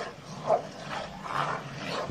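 A pit bull and a Bernese mountain dog fighting, giving three short outbursts of dog noise, the loudest about half a second in.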